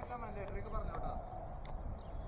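Faint, distant voices talking over low outdoor background noise.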